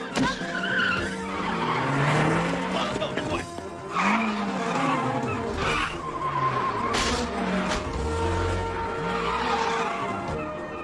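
Car chase: car engines revving up and down, with tyres squealing several times through hard turns.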